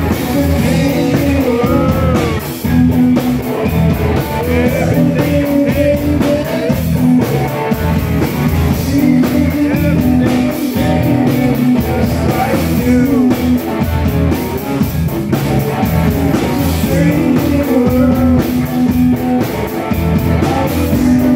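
Live rock band playing loudly and steadily, with electric guitars, drums and keyboards and a voice singing.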